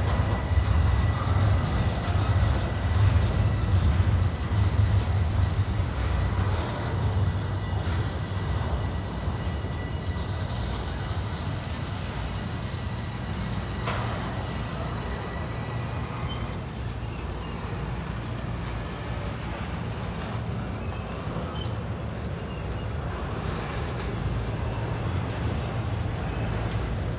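Double-stack intermodal well cars of a long freight train rolling past at close range: a steady low rumble of steel wheels on rail, heaviest in the first few seconds. A faint high steady tone runs through the first half, and a single sharp clack comes about fourteen seconds in.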